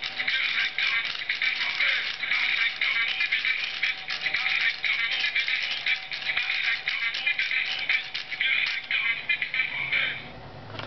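A musical birthday card's tiny built-in speaker playing its recorded song with singing, the sound thin and tinny with almost no bass. It cuts off abruptly at the end.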